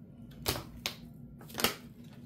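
Tarot cards being handled by hand: a few sharp snaps and flicks of the card stock as a card is pulled and the deck shuffled, three of them louder than the rest.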